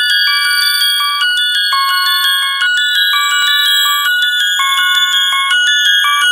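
Intro theme music: a quick, high melody of struck bell-like chimes, about five notes a second, each note ringing on under the next.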